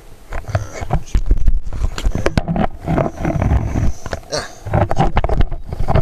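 Handling noise from a camera being turned around and repositioned: irregular rubbing, knocking and rumbling right against its microphone.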